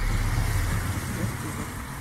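A car passing close on a wet street, its tyres making a steady noise on the wet road along with a low engine sound, fading gradually as it drives away.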